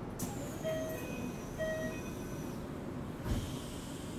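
Inside a Keikyu 1000-series electric train car: a steady low rumble, with two short beeps about a second apart near the start and a single low thump a little after three seconds in.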